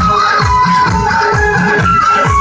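Loud dance music with a heavy bass-drum beat, two to three hits a second, under a held high melody line.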